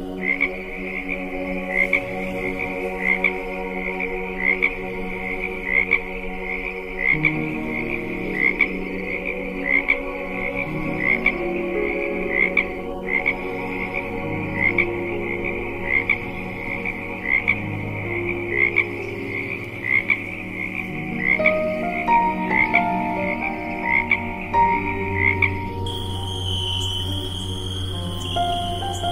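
A frog calling over and over in a steady series of short croaks, over a soft ambient music pad whose held chords change every few seconds. Near the end the croaks stop and a higher, steady sound takes over.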